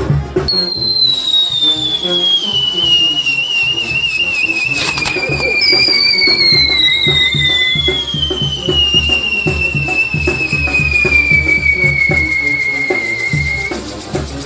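Whistling fireworks on a spinning castillo wheel: two long whistles, each sliding slowly down in pitch. The first starts about half a second in and the second, higher, starts around the middle and cuts off near the end, with a sharp crack about five seconds in. Music with a steady drum beat plays underneath.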